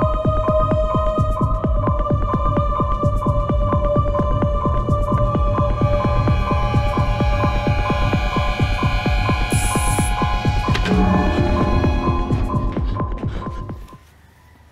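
Suspense film score: a rapid, even low throbbing pulse under sustained high synth tones. It builds steadily, then falls away near the end.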